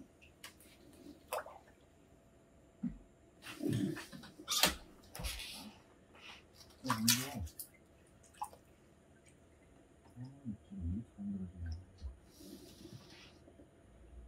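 Quiet pondside at night: a few scattered knocks and water-like sounds, with faint voices murmuring now and then.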